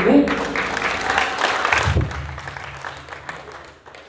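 Audience applauding as a song ends, the clapping dying away over about three seconds.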